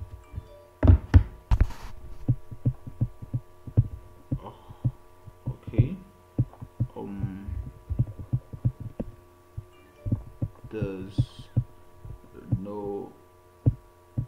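Irregular soft clicks and thumps, most of them loudest about a second in, over a steady electrical hum, with a few brief bits of low muttered speech.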